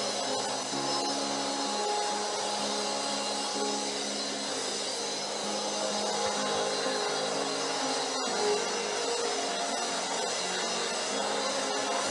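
Soft background music of slow, held chords over a steady hiss, with a single click about eight seconds in.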